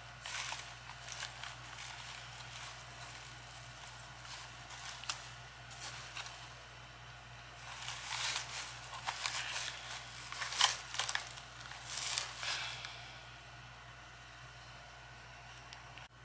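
Faint rustling and light knocks as a basket of artificial flowers beside a candle holder is handled and moved into place, busiest in the middle of the stretch, over a low steady hum.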